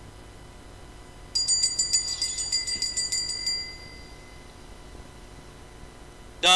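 Altar bell rung at the elevation of the chalice after the consecration at Mass: a rapid run of bright, high strikes starting about a second in, lasting about two seconds, then ringing away.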